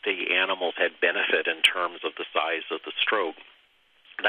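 Speech only: a person talking, with a short pause near the end.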